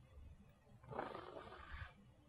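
A child blowing out a burning match: one breathy puff about a second long, starting about a second in.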